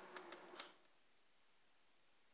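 Chalk writing on a blackboard: a quick run of short taps and scratches as a word is chalked, stopping under a second in, then near silence.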